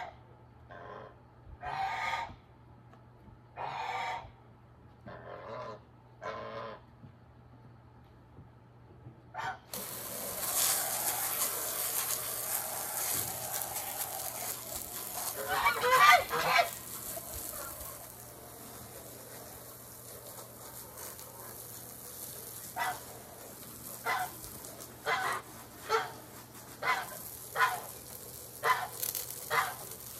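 Geese honking several times over a quiet background. About ten seconds in, water starts jetting from a hose spray wand onto the wooden deck: a sudden, steady hiss that lasts to the end, with more goose honks over it.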